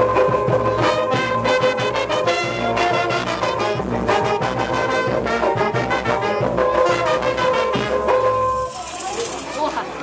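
Street brass band of trumpets, trombones and saxophone playing a lively tune over a steady beat. The music cuts off near the end and gives way to crowd chatter.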